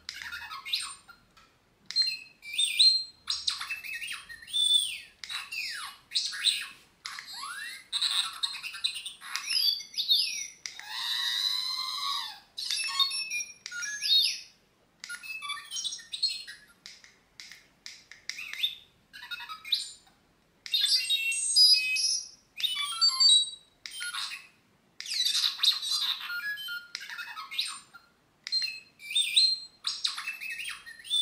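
Hot Toys 1/6 scale R2-D2 figure's sound feature playing R2-D2's electronic beeps and whistles: a string of short chirping phrases with rising and falling glides and warbles, separated by brief pauses, with a longer warbling trill about 11 to 13 seconds in.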